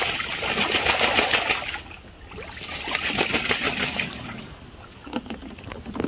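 A Muscovy duck bathing in a plastic kiddie pool, splashing the water hard in two bouts of about two seconds each, the second starting a little over two seconds in.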